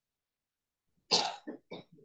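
A person coughing: one loud cough about a second in, followed by three shorter coughs.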